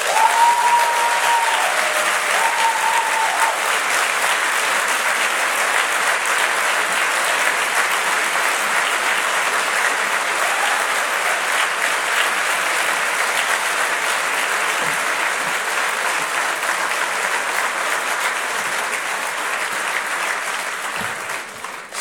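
A large hall audience applauding steadily, the clapping dying away just before the end.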